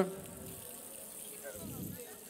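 Razor clams gently sizzling in hot olive oil in a frying pan, a steady soft hiss, with faint voices in the background.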